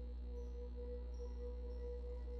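Soft ambient background music: a low drone under a steady held tone that swells gently, with no beat.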